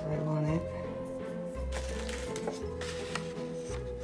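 Background music with a long held tone and low bass notes coming and going about once a second. Under it are a few light clicks and rustles of paper leaves being pressed down by hand.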